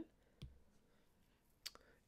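Near silence with two faint clicks, one about half a second in and one near the end.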